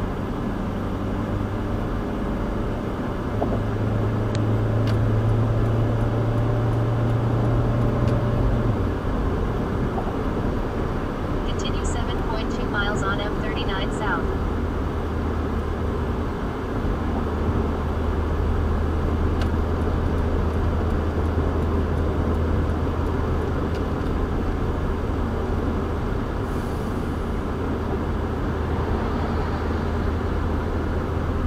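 Road and engine noise inside a car's cabin as it accelerates up a freeway on-ramp: a steady low engine drone with tyre and wind noise. The drone settles lower about nine seconds in.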